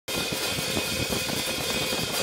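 Steady rolling roar of a downhill skateboard's urethane wheels running fast on asphalt, with wind noise.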